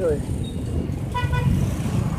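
Road traffic running by, with a vehicle horn giving a short toot about a second in.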